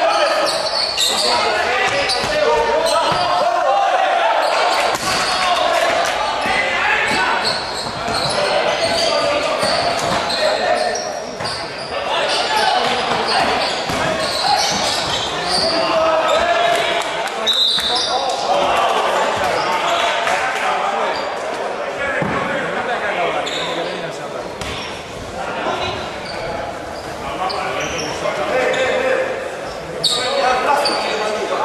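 Sound of a basketball game in a large sports hall: a ball bouncing on the court amid the shouts and chatter of players and spectators, all echoing.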